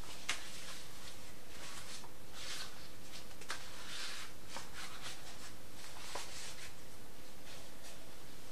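Faint rustling of a wet indigo-dyed silk scarf being shaken out and handled in the air, over a steady background hiss, with a few small clicks. The silk is being aired between dips so that it turns from green to blue.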